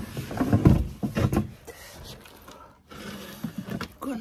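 A garden table being shifted into place on a terrace: a run of knocks and scrapes, loudest in the first second and a half, with a few lighter knocks near the end.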